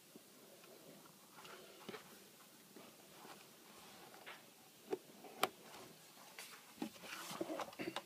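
Faint scraping of a sharp Stanley knife blade cutting through suede leather on a cutting mat, with two sharp clicks about five seconds in. Rustling near the end.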